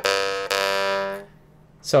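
Jaw harp twanging its single G note with the player's throat held open, the overtones staying steady. It is plucked again about half a second in and dies away a little past halfway.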